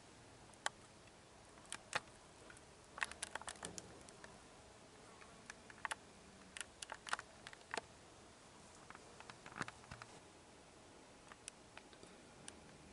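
Faint, scattered small clicks and ticks over quiet room tone, in loose clusters, with a faint low hum that comes and goes.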